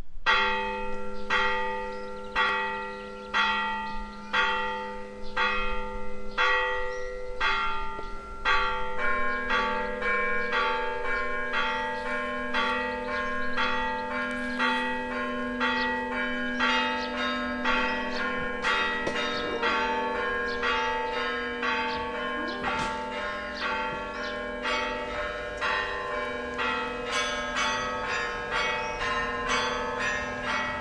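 Russian Orthodox church bells ringing: a steady run of strikes about one and a half per second over a low tone that rings on underneath, then from about nine seconds in more bells join in a faster, fuller peal.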